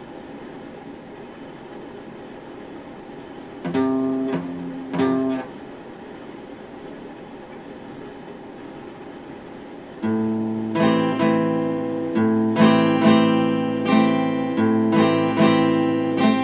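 Epiphone acoustic guitar: two strummed chords left ringing about four and five seconds in, then a pause, then steady rhythmic strumming from about ten seconds on.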